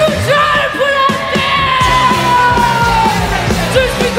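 Live punk-rock band with electric guitars, bass and drums, and a woman's voice yelling one long held note that slides slowly down in pitch over about three seconds.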